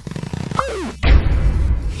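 Cartoon sound effects: a quick rattle of clicks and a short falling tone, then about a second in a loud crash with a deep rumble that lasts almost a second.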